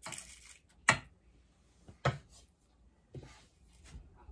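A spoon working a crumbly graham cracker crust mixture into paper liners in a mini muffin tin: soft scraping with sharp taps of the spoon, the loudest about a second in and another about two seconds in.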